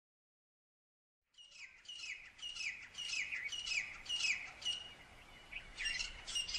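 A bird calling in a quick series of short, downward-sweeping notes, about three a second, starting about a second and a half in after a silent start.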